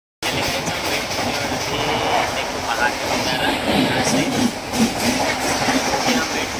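Running noise of a passenger train heard from inside the coach: a steady rumble and rattle of the wheels on the rails.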